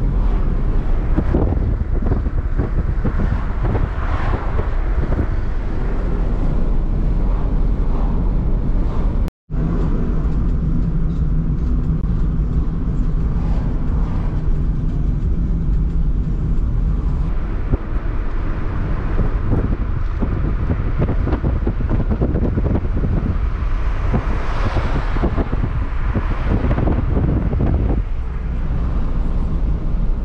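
Steady road and engine noise of a moving car, heard from inside the cabin. It drops out for an instant about nine seconds in, and a louder hiss swells and fades about twenty-five seconds in.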